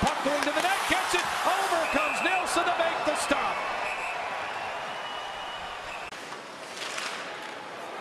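Ice hockey arena game sound: crowd voices rising and falling, with sharp clacks of sticks and puck on the ice. It thins out and grows quieter over the last few seconds.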